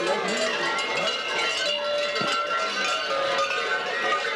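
Many large bells worn by babugeri mummers in fur costumes, ringing continuously as the mummers move, with shouting voices mixed in.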